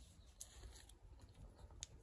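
Near silence: room tone with a couple of faint clicks, the clearest near the end.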